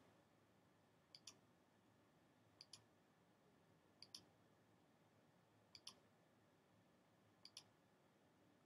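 Five faint computer mouse clicks, each a quick double tick of button press and release, about every one and a half seconds, advancing a presentation slide by slide.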